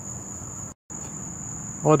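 Steady high-pitched trill of crickets, broken briefly by a moment of total silence near the middle.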